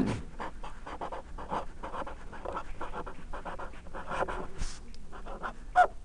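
Felt-tip marker writing on paper: a quick run of short, irregular scratchy strokes as letters are written out, a little louder about four seconds in.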